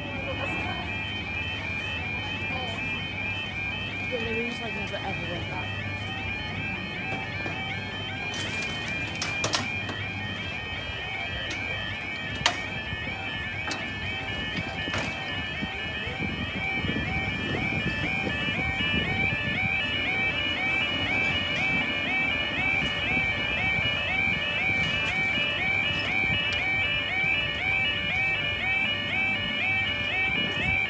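Level crossing yodel alarm warbling steadily and unchanged throughout, with a low traffic rumble growing from about halfway.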